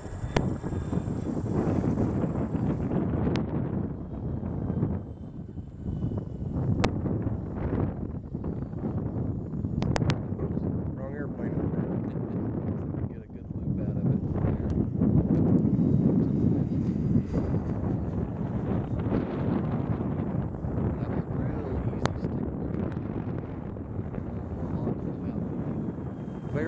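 Wind buffeting the microphone, a loud low rumble that swells and fades, broken by a few sharp clicks.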